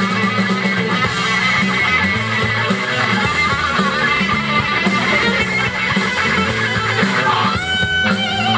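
Live blues-rock band playing: electric guitar lead lines over bass guitar and drums, with steady cymbal hits. Near the end the guitar holds one long sustained note.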